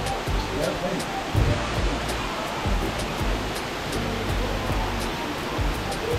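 Steady rush of a waterfall pouring into a gorge pool, with music and faint voices underneath.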